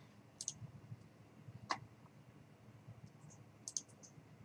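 Computer mouse clicking a few times: short, sharp clicks about half a second in, once near the middle, and a quick pair near the end.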